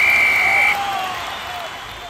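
A short, high, steady whistle tone, about three-quarters of a second long, over crowd noise with a few shouting voices that fades away.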